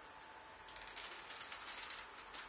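Handling noise: a rapid, irregular run of small clicks and rattles as cables and their metal connectors are moved by hand, starting about two-thirds of a second in.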